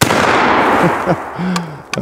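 A single .45-70 rifle shot from an original 1880s Remington Rolling Block, a sharp report followed by a long rolling echo that fades over about a second and a half.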